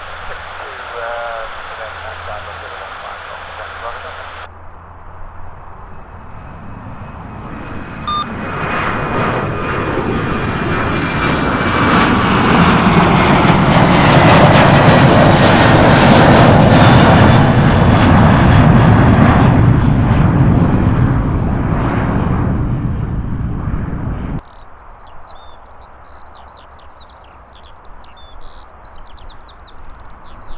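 Boeing 737-800 jet engines at takeoff power as the airliner climbs out overhead. The sound swells to a loud peak in the middle and then cuts off suddenly about three-quarters of the way through.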